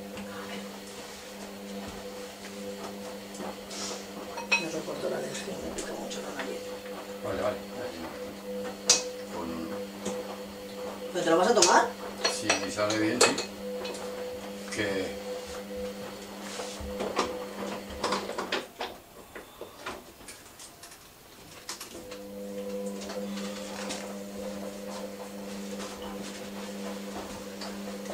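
Dishes and metal utensils clinking and clattering at a kitchen sink, with a busier burst of clatter about twelve seconds in. Under it runs a steady electric appliance hum, which stops for a few seconds about two-thirds of the way through and then starts again.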